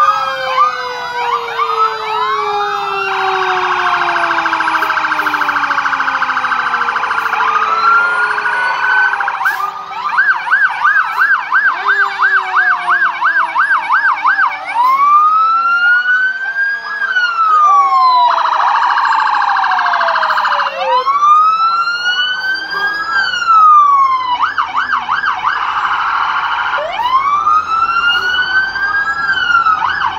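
Several fire truck sirens sounding at once as the trucks pass, overlapping long rising-and-falling wails with stretches of rapid yelping warble.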